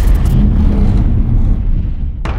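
Loud, deep rumble of trailer sound design, the low tail of a boom hit under the title card: the high hiss falls away about half a second in while the low rumble carries on, easing a little near the end.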